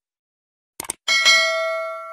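Sound effect of a quick click about three-quarters of a second in, followed by a bright bell ding that rings on and fades slowly. It is the click-and-notification-bell effect of a subscribe-button animation.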